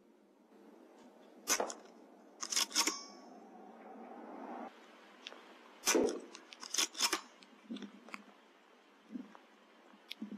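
Two shots from a silenced air rifle, about four and a half seconds apart, each followed within about a second by a quick run of sharp metallic clicks. Fainter knocks follow near the end.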